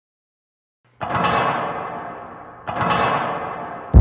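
About a second of silence, then two deep percussive hits, about a second and a half apart, each ringing out and fading: an intro stinger of timpani-like or cinematic impact hits. Loud electronic music cuts in at the very end.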